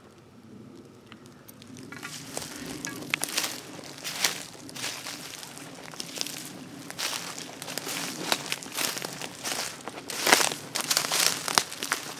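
Footsteps crunching through dry leaf litter and pine needles, starting about two seconds in, with the loudest crunches near the end.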